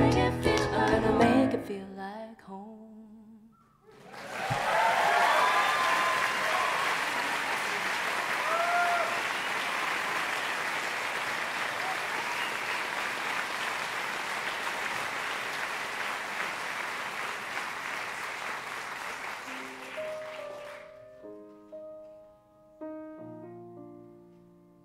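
The last sung line and piano chords of a song die away. About four seconds in, audience applause starts, with a few whoops, and runs for some seventeen seconds before fading. Near the end, soft single piano notes are played.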